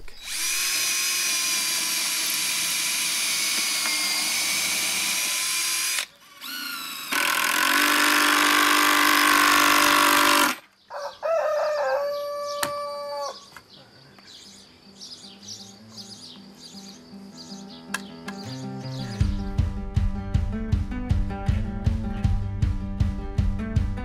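Cordless drill driving screws into wood: two long, steady runs of several seconds each in the first half. About three-quarters of the way in, music with a steady beat comes in.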